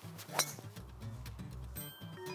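A golf club strikes the ball once, about half a second into a full swing: a single sharp, ringing click. Background music with a steady bass line plays underneath.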